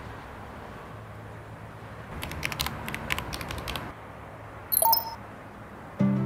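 Interface sound effects over a low steady hum: a quick run of typing clicks from about two to four seconds in, then a short high electronic beep near five seconds as a chat message is sent.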